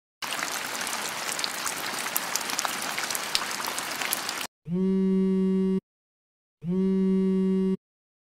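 Rain falling: a steady hiss with many small drop ticks, which cuts off abruptly after about four and a half seconds. Then come two identical steady buzzing tones, each a little over a second long, with a short gap between them.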